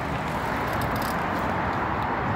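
Steady rushing noise of traffic on a busy main road.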